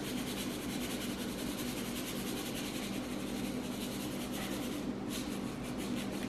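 Soft dry rustling of microgreen seeds being pinched out of a small cup and sprinkled onto soil in a seed tray, over a steady low hum.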